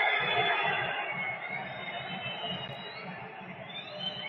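Football stadium crowd noise, loud at first and dying down over a few seconds, over a regular low beat of about four a second. A few faint rising high tones come near the end.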